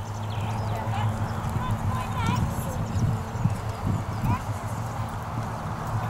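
A horse's hooves thudding on the ground a few times at an irregular pace, over a steady low rumble.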